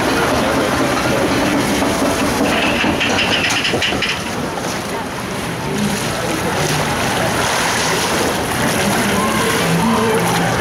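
Steady ambient din of an indoor boat ride: indistinct voices over a constant wash of water and machinery noise, with a short hiss about two and a half seconds in.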